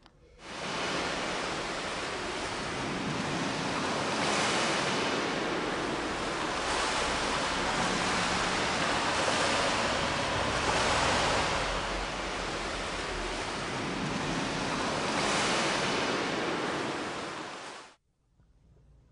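Ocean surf: a steady rush of waves that swells every few seconds, fading in quickly and cut off abruptly at the end.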